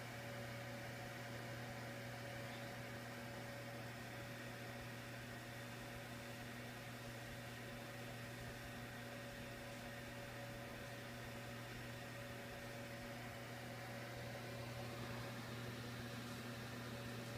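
Electric log set infrared heater's blower fan running: a faint, steady low hum over an even hiss.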